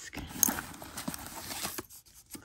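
Leather-and-fabric tote bag being handled and shifted: the lining rustles, with several short clicks and taps, the sharpest about half a second in.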